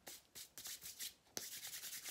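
A quick run of short rubbing and scraping strokes from hands handling plaster materials, with one sharp click about one and a half seconds in.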